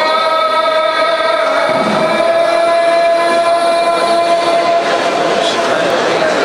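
A muezzin's call to prayer (adhan) over the mosque loudspeakers: a man's voice holding one long note that fades about five seconds in.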